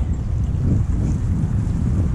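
Wind buffeting the microphone in a steady low rumble, over the even rush of a shallow creek flowing past.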